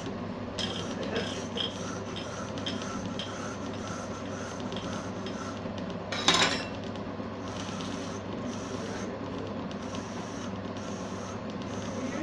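Small lathe running steadily while a hand-held cutting tool scrapes a spinning green ebonite pen blank, turning it down into a pen part. A single brief, louder knock comes about six seconds in.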